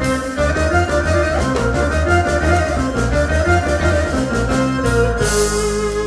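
Live band playing an instrumental passage: keyboard chords on a Yamaha CS1x synthesizer over an electric bass line, with a steady beat.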